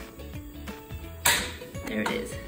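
Portable butane cassette gas stove being lit: the ignition knob is turned and the igniter snaps and the burner catches in one sudden burst about a second in, fading over half a second, over background music.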